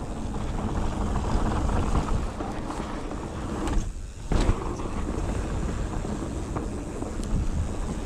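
Mountain bike running fast down a dry dirt trail: a steady rumble of tyres and rattling bike over the dirt, with wind on the microphone. There is a short lull about four seconds in, then a thump.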